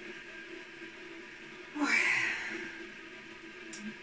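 A woman's breathy "oy" exclamation, close to a sigh, about two seconds in, over a faint steady hum.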